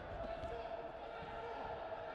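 Wrestlers' bodies thudding on the mat during a scramble, over arena ambience with indistinct shouting voices.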